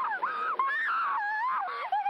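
A woman wailing in pain: a run of high cries that rise and fall in pitch, with short breaks between them.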